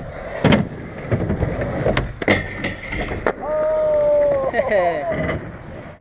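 Skateboard wheels rolling on concrete, with several sharp clacks of the board. About three and a half seconds in, a loud, long held shout begins, its pitch falling away before it stops near the five-second mark.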